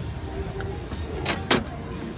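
A plastic cup of ice is set down into the metal cup holder of a cup-sealing machine, with two quick knocks about a second and a half in, the second louder. A steady low rumble runs underneath.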